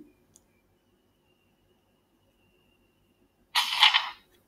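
A single click about a third of a second in, then near silence, then a short rustling page-turn sound from a digital flipbook viewer in the last half second.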